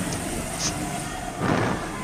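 Go-karts running on an indoor track: a steady, noisy engine hum that swells briefly a little past the middle.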